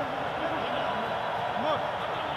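Pitch-side sound from a football match in an empty stadium: faint, short shouts from players on the field over a steady background hiss.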